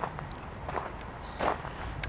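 Footsteps on gravel: about three crunching steps, evenly spaced, under low background noise.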